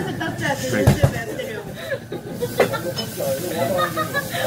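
Voices talking, with two low thumps about a second in.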